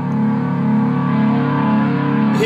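Charvel 375 Deluxe electric guitar sounding through an amplifier with its volume turned up and the strings left untouched: a loud, steady, sustained drone of amplified ringing and hum.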